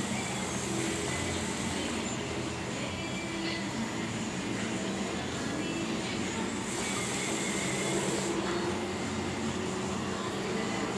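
Hookah water base bubbling steadily as smoke is drawn through the hose in one long pull.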